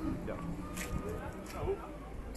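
Indistinct voices of several people talking nearby, with no clear words, over a steady low background rumble.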